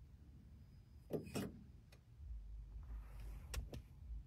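Faint handling noises inside a car cabin: a quick cluster of clicks and knocks about a second in, a light rustle, then two sharp clicks near the end, over a low rumble.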